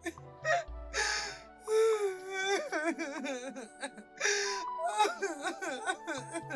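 Mournful film soundtrack: a voice singing with wavering vibrato over held keyboard chords and deep bass notes, mixed with a woman's crying, with breathy sobs and wails.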